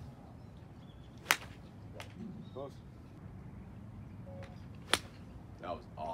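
Golf iron striking a ball on a grass range: two sharp club-on-ball strikes, about a second in and again about three and a half seconds later.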